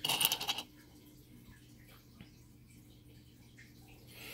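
Small stone artifacts (arrowhead fragments, chert and petrified-wood pieces) clattering against each other in a bowl as fingers rake through them, a short rattling burst right at the start. After it only a few faint ticks.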